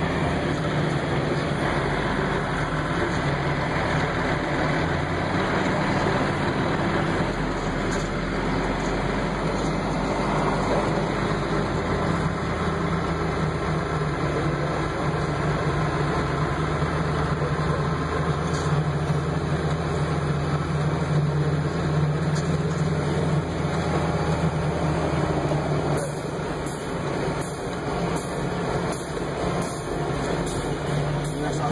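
John Deere tractor engine running steadily as the tractor drives along, heard from inside the cab. The engine eases off a little near the end.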